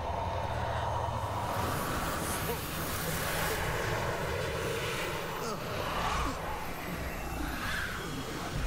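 A sustained rushing, wind-like whoosh: the sound effect of a magical green mist swirling through a hallway, with a few short vocal sounds over it.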